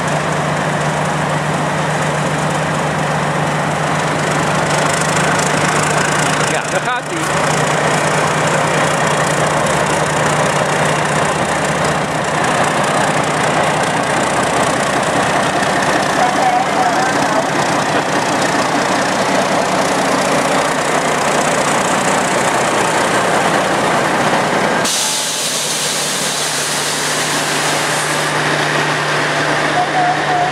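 D13E diesel locomotive's engine running with a steady low hum as it hauls its train past, the rumble and rattle of the passing coaches over it. There is a brief dip about seven seconds in, and the sound thins for a moment near the end.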